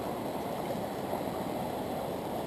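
Fast water of a small stream rushing over shallow riffles: a steady rush with no breaks.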